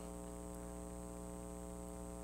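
Steady electrical mains hum with a buzzy row of overtones, unchanging throughout.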